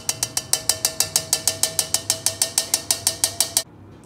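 Rapid, even metallic tapping, about eight taps a second, each with a short ringing tone: a mesh tea strainer being shaken and knocked against a pan to work sauce through it. The tapping stops abruptly near the end.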